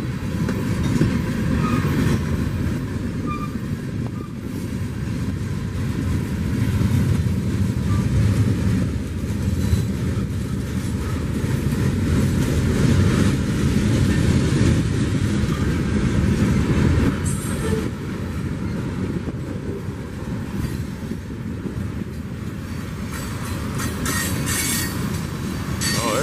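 A slow-moving CSX freight train's tank cars and boxcars rolling past: a steady low rumble and rattle of steel wheels on the rails, with a couple of brief higher scraping sounds late on.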